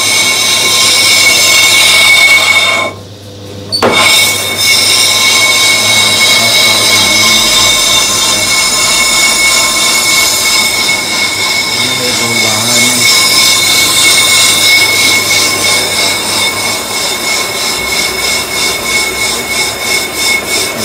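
Lathe facing a brake disc: the cutting tool squeals steadily against the spinning rotor in a loud, high-pitched ringing screech. It breaks off for under a second about three seconds in, then resumes.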